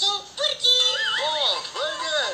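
Music with a high singing voice whose pitch swoops up and down in arcs.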